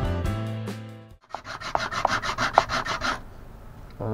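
Cast resin coaster rubbed by hand back and forth on a sheet of sandpaper, a quick rhythmic scraping of several strokes a second that starts about a second in, after music fades out, and stops about three seconds in. The sanding grinds down blobs to flatten the uneven coaster bottom.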